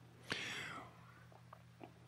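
A faint breath from a speaker, about a third of a second in and fading out over about half a second, over a low steady hum, with a couple of faint ticks near the end.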